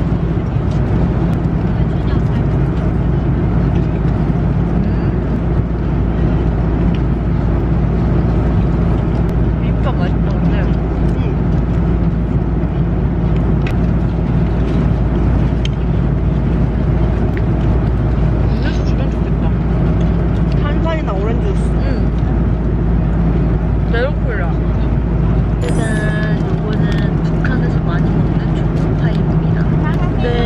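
Steady airliner cabin noise in flight: a constant low drone of engines and rushing air with a few low steady hum tones, and faint voices near the end.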